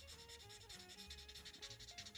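Faint rubbing of a Tombow ABT PRO alcohol marker's nib stroked over card stock while colouring, under quiet background music.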